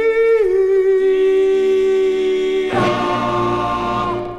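Doo-wop vocal group singing long, held harmony notes on a 1962 record. About three seconds in, a fuller chord with a low bass comes in under the voices.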